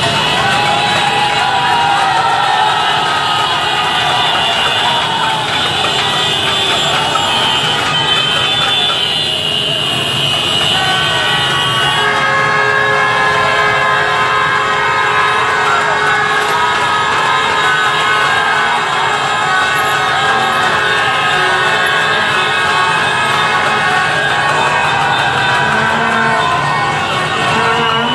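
Dense motorbike traffic with many horns sounding at once, their steady tones overlapping continuously over engine noise and a shouting crowd.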